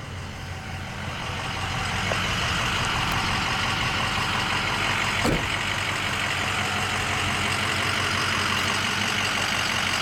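Ford 6.0 L Power Stroke V8 turbodiesel idling steadily, getting louder about a second or two in. A short click about five seconds in.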